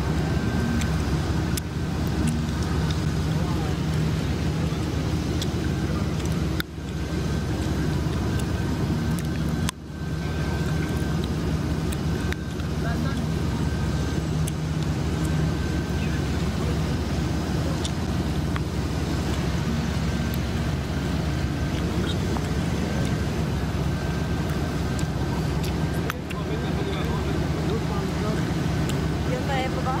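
SUV engines idling steadily, with voices talking faintly in the background; the sound briefly drops out twice, about seven and ten seconds in.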